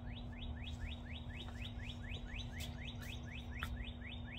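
A bird calling a quick, even series of short rising chirps, about five a second, over a steady low hum.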